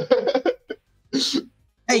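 A man's speech trails off, then after a short pause comes one brief cough about a second in, before speech starts again near the end.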